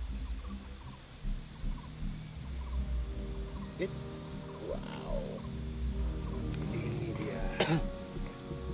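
Insects chirring steadily and high-pitched in the background, with soft background music and a few brief voices.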